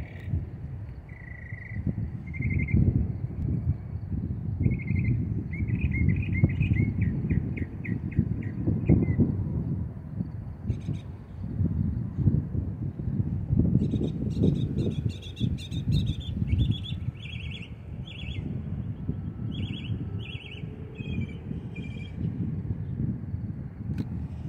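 Small birds chirping over a constant low rumble: a run of quick trilled notes about six to nine seconds in, then short repeated chirps through the second half.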